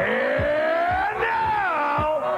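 A man's amplified voice through a public address system, holding one long drawn-out shouted call that rises in pitch and then falls away near the end.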